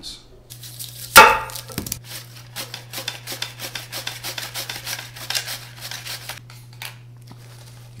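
Onions being sliced on a plastic mandoline slicer: a loud knock about a second in, then a fast run of repeated slicing strokes for several seconds over a steady low hum.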